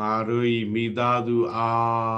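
A man's voice chanting one line of a Burmese metta (loving-kindness) recitation on a steady, held pitch, starting abruptly out of silence.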